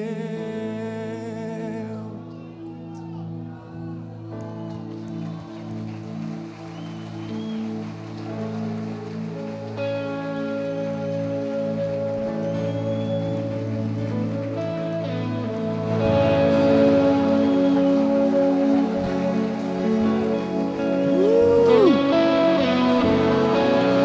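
Live worship band playing a slow passage of long held chords, growing louder about two thirds of the way through, with a voice sliding in pitch near the end.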